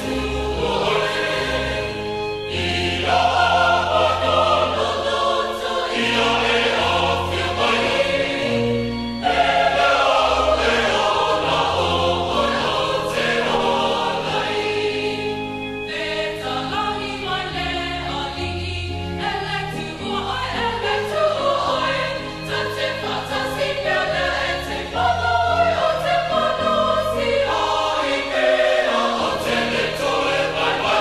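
A small group of singers singing a hymn together into microphones, over held bass notes that change every second or two.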